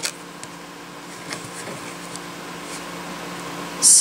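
A steady low machine hum in the room, with a few faint light ticks.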